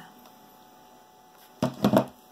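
Low steady electrical mains hum, with a short loud burst of noise near the end.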